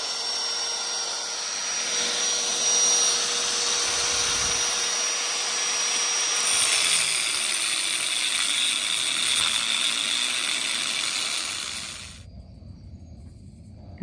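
Angle grinder with a cut-off wheel cutting through a steel lug nut that spins with its stud. The motor's whine drops in pitch under load about seven seconds in, and the grinder stops suddenly near the end.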